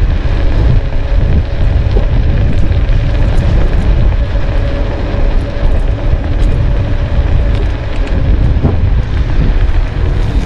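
Wind buffeting the microphone of a handlebar-mounted action camera on a moving e-bike: a loud, steady low rumble, with a faint steady whine running through it.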